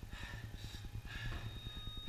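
A man breathing hard in three breaths while doing burpees, over a steady low hum.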